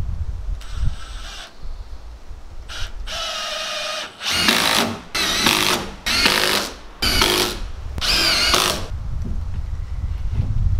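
Cordless drill driving screws into wooden window trim in about six short runs, each a second or less, the motor's whine wavering in pitch as each screw goes in. Wind rumbles on the microphone between runs.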